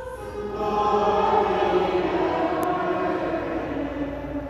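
A choir singing a sacred chant or hymn, swelling louder about a second in.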